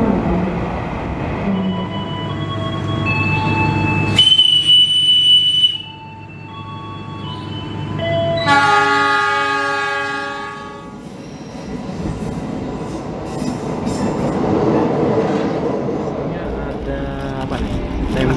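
Passenger train at a station: shifting high metallic squeals, one piercing wheel squeal for about a second and a half around four seconds in, and a locomotive horn blast of about two seconds a little past the middle. After that comes the steady rumble of the train running.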